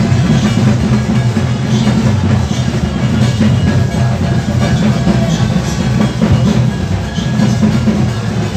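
Loud music with heavy drumming, the deep drum tones dominant and unbroken.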